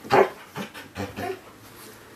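Australian shepherd dog vocalising: one loud, sharp sound just after the start, then three shorter, softer ones within the next second.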